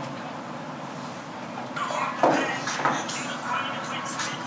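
Quiet room tone for about two seconds, then indistinct voices in the room, with a single sharp knock shortly after the voices start.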